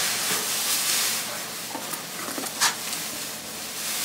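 Shredded paper filler rustling and crackling as a hand digs through a packed box, with one sharper crackle a little past halfway.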